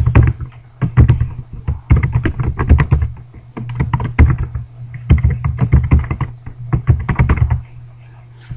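Computer keyboard typing in quick bursts of keystrokes as an email address and password are entered, stopping shortly before the end. A steady low hum runs underneath.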